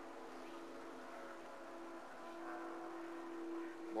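NASCAR stock car V8 engines droning steadily on the broadcast track audio, a single-pitch hum that grows a little louder toward the end.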